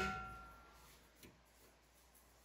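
Ringing tail of a sharp metallic clink, a few clear tones fading out within about three-quarters of a second, then one faint click about a second later.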